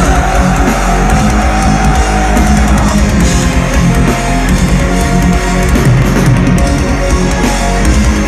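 Metalcore band playing live at full volume: heavy distorted guitars, bass and drums crash in together all at once, with a held high note over the first few seconds.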